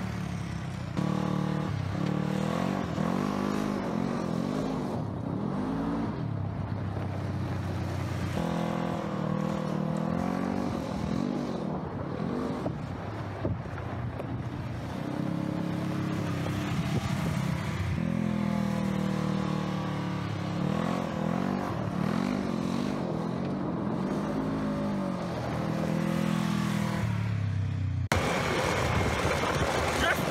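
Polaris side-by-side UTV engine revving up and down again and again as it is thrown into drifting turns on gravel, its pitch rising and falling every second or two. The sound changes abruptly near the end.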